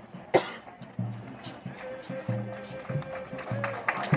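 A bass drum beating a slow, steady rhythm, about three beats every two seconds, under crowd voices, with one long held note in the middle.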